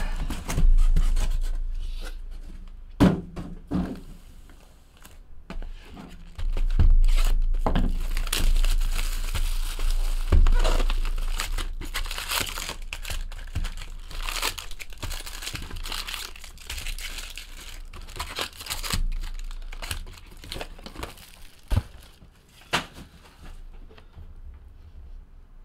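Cellophane shrink-wrap torn and crumpled off sealed trading-card boxes, with the cardboard boxes opened and the foil-wrapped packs crinkling as they are pulled out and stacked. A few sharp knocks come about three seconds in and twice near the end.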